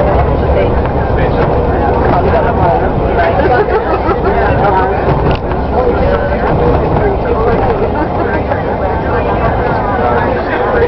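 Steady low rumble of a bus's engine and tyres on a wet road, heard inside the bus, with indistinct passengers' voices talking over it.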